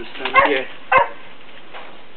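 Two short, loud animal calls about half a second apart, the second very brief.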